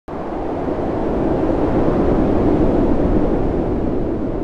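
A steady, low rushing noise with no tune in it. It starts abruptly, swells gently and eases a little near the end.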